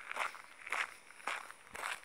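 Footsteps of a person walking at a steady pace, about two steps a second.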